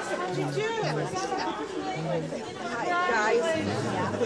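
Indistinct chatter of several people talking at once, with short low steady tones underneath.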